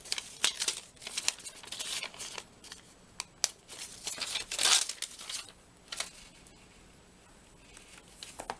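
A paper strip of glue dots crinkling and rustling in the hands while a dot is picked off it with tweezers, with light clicks; the loudest rustle comes about halfway through, and the handling dies down after about six seconds.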